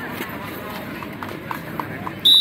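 Steady hubbub of a large crowd and indistinct voices around a kabaddi mat, with a run of short, evenly spaced chirps, about four a second, in the second half.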